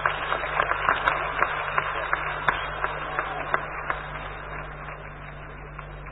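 Audience applauding, the clapping thinning out and dying away over about four seconds, heard over a steady low hum in an old, muffled recording.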